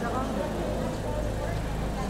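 People talking in the crowd over the steady low rumble of a vehicle engine idling.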